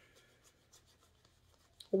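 Tarot cards being shuffled by hand: faint, light scraping and scattered soft ticks of card against card. A woman's voice starts right at the end.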